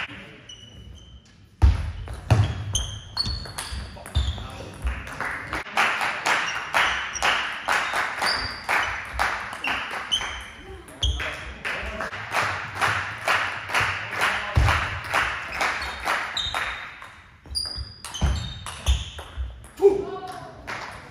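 A long table tennis rally: the celluloid-type plastic ball clicking in quick succession off bats and table, about two to three hits a second, with sports shoes squeaking on the hall floor. The rally starts about a second and a half in and ends a few seconds before the end, and a player's shout follows at the very end.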